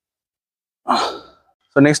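A man's sigh: one short breathy exhale about a second in, fading quickly, just before he speaks again.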